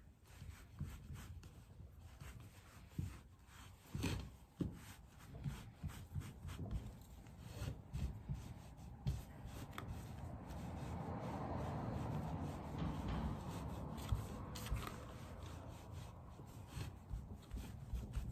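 Cloth rag rubbing dark wax into a decoupaged board, a scrubbing swish that becomes steadier and louder in the second half, with occasional light knocks.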